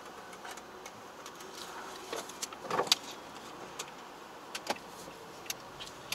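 Car heard from inside the cabin, running quietly, with a cluster of sharp clicks and knocks about two to three seconds in and a few single clicks after.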